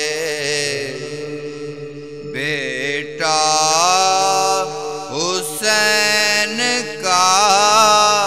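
A man singing an Urdu noha, a Muharram lament, in long drawn-out phrases with wavering, ornamented held notes, over a steady low drone.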